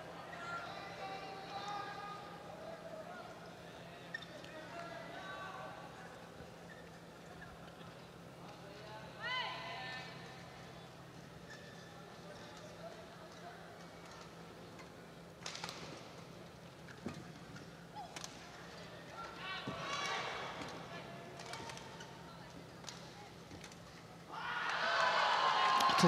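Badminton rally in an indoor arena: a few sharp racket strikes on the shuttlecock and a court-shoe squeak over a faint crowd murmur. Near the end the crowd breaks into loud cheering and clapping as the point is won.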